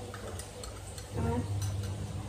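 Metal spoon stirring instant coffee in a drinking glass, clinking lightly against the glass several times.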